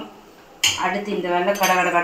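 A metal ladle clinking and scraping against a metal cooking pan as gravy is stirred, with a sharp clink about half a second in.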